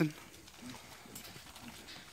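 Faint, scattered small taps and scuffs from an American Bully puppy moving about in a wire kennel on a wooden deck.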